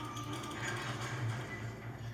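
A film soundtrack heard through a television's speakers: quiet music with light mechanical clicking and clatter.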